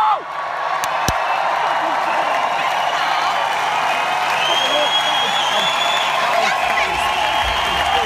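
Large arena crowd cheering and applauding steadily, with a few shrill whistles cutting through.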